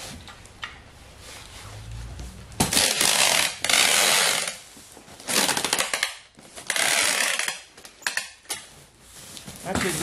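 Packing tape pulled off a handheld tape gun dispenser and pressed along the seams of a cardboard box, sealing it shut: four loud rasping pulls of about a second each, starting a few seconds in.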